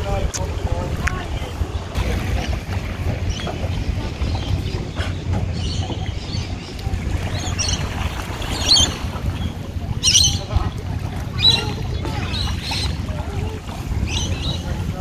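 Wind rumbling on the microphone by calm sea water. From about five seconds in, short, faint high-pitched sounds come every second or two.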